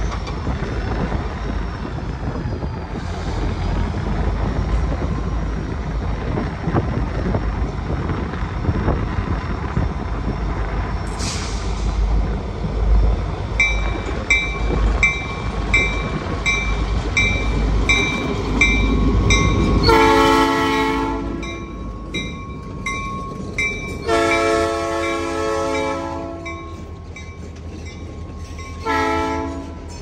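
Diesel freight locomotives rumble in as they approach. About halfway through, a bell starts ringing about every half second. The lead locomotive then sounds its multi-note air horn: two long blasts and a short one, the start of the standard grade-crossing signal.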